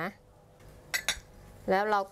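Two quick, light clinks of tableware being handled, about a second in.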